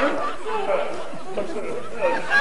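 Indistinct talking and chatter, several voices overlapping with no clear words.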